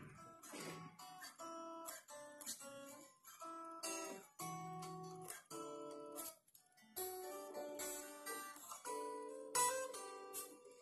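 Unplugged Strat-style electric guitar played without an amplifier: a slow run of picked notes and chords, each ringing briefly with short pauses between, fairly quiet.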